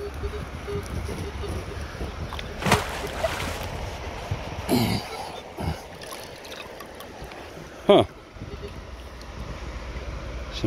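Water splashing and sloshing as a hand reaches into shallow canal water and lifts out a heavy metal object, with the loudest burst of splashing about three seconds in.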